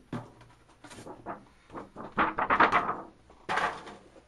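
Corrugated cardboard box being handled as its top flap is pulled open: scattered light clicks, a scratchy rustling scrape about two seconds in, and a short rasp near the end.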